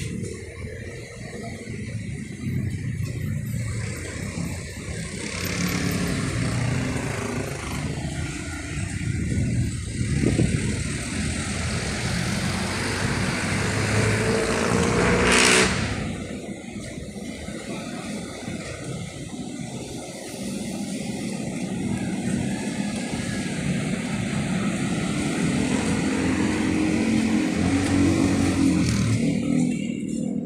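Street traffic: motor vehicle engines running and revving close by, their pitch shifting throughout. A louder rushing noise builds to a peak about halfway through and cuts off abruptly.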